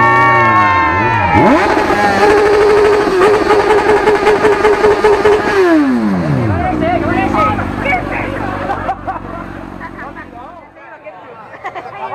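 Sport motorcycle engine revved in rising and falling sweeps, then held at high revs with a rapid pulsing note for a few seconds. About six seconds in, the revs fall away to a lower steady idle that fades out near the end.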